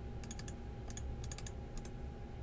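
Faint, irregular clicking of a computer mouse and keyboard, about a dozen quick clicks with some in short runs, over a faint steady hum.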